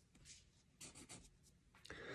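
Near silence: room tone, with a few faint soft rustles about a second in.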